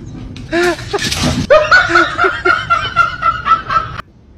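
A person laughing in a rapid string of short bursts, starting about a second and a half in and cutting off suddenly at the end.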